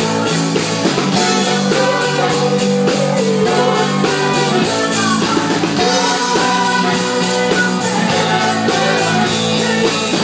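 Live soul band playing loudly: electric guitar and drum kit on a steady beat, with a singer's voice over them.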